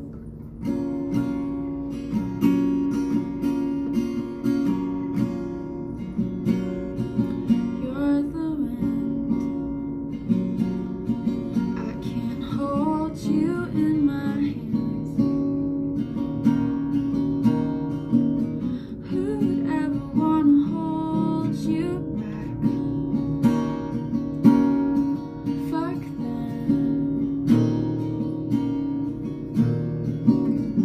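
Acoustic guitar strummed in steady chords, starting a song about half a second in.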